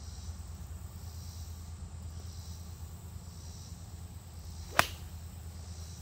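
Golf iron striking the ball off the fairway grass: one short, sharp click about five seconds in.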